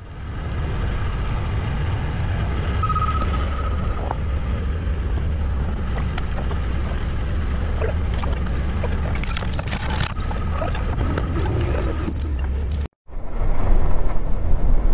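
A truck engine idling steadily, with occasional clinks and knocks of chain and metal as the axle is secured on the truck bed. The sound cuts off abruptly near the end.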